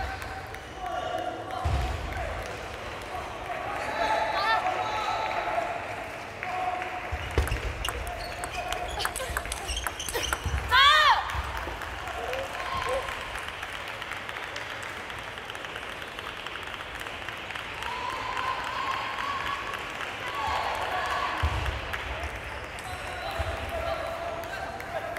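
Table tennis doubles rally: the celluloid ball clicks off paddles and the table. A sharp, high-pitched shout comes about eleven seconds in, as a player wins the point, and voices carry through the hall.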